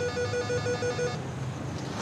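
Apartment door intercom ringing a unit: a rapidly pulsed electronic call tone, about six beeps a second, that stops a little over a second in.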